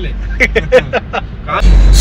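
Men laughing and talking inside a car cabin over the steady low rumble of the car. The rumble grows much louder near the end as a man starts talking.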